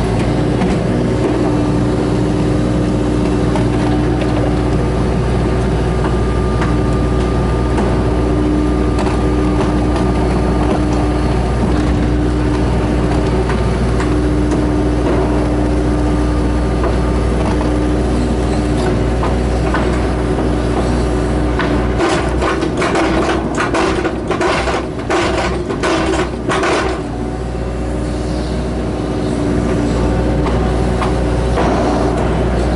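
Hitachi mini excavator's diesel engine running steadily under the cab, with a hydraulic whine that breaks off now and then as the boom and bucket move soil. A run of sharp knocks and rattles comes near the end as the bucket works the dirt.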